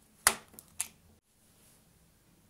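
Two sharp plastic clicks about half a second apart, the first louder: a plug being unlatched and pulled out of a plastic power-strip socket.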